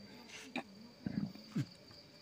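Three brief, low grunts about half a second apart, each dropping in pitch.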